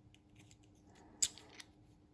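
Steel drill chuck and arbor clicking against each other as they are handled and fitted together: a few light taps, with one sharp metallic click a little past a second in and a smaller one shortly after.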